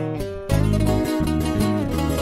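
Instrumental break of a Mexican regional band: plucked acoustic guitar runs over a bass line. The sound thins briefly, then the full band comes back in louder about half a second in.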